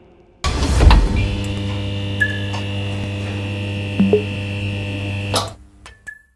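Title-card sound effect: a sudden impact about half a second in, then a steady deep drone held for about five seconds that stops abruptly near the end.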